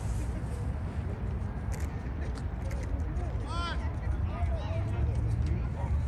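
Outdoor youth soccer field ambience: distant high shouts of young players, a few short calls near the middle, over a steady low rumble.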